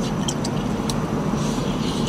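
Steady low rumble of a car idling, heard inside the cabin, with a few faint clicks of chewing fried chicken.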